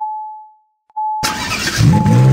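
Car dashboard warning chime, a single tone pinging twice about a second apart. Then an engine starts about a second in and revs up near the end.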